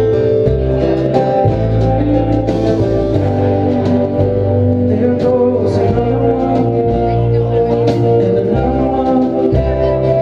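A live indie folk-rock band playing a song: acoustic and electric guitars over an upright bass line and drums, with regular cymbal hits.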